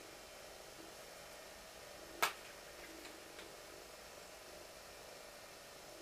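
A single sharp plastic click about two seconds in as a hand-cream tube is opened and its cap handled, followed a little later by a fainter tick, over quiet room tone.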